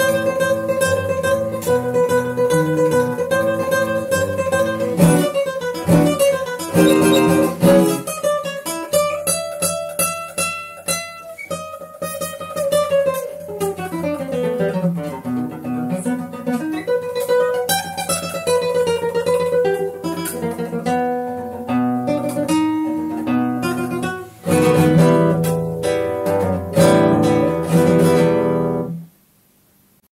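Solo classical guitar playing a fast toccata: rapid repeated plucked notes, a run that falls and then climbs back up in the middle, then loud full chords. The music stops suddenly about a second before the end.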